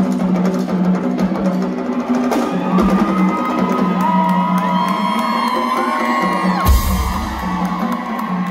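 Live drum solo on a Pearl acoustic drum kit, with fast strokes throughout and one heavy hit that combines a bass drum and a crash about seven seconds in. Crowd whooping and yelling can be heard over the drumming in the middle of the stretch.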